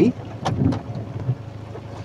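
Steady low hum inside a van's cabin, with two short sharp ticks about half a second and three-quarters of a second in.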